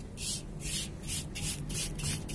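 Hands scraping and rubbing wet, gritty dirt-and-cement mix against the side of a metal basin in short, rasping strokes, about three a second.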